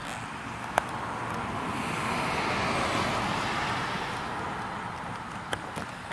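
A road vehicle driving past: a rushing noise that swells to a peak about halfway through and fades away again. A couple of light clicks sit on top of it.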